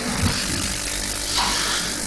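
Steady rushing noise with a low hum underneath, picked up through a microphone, with no speech.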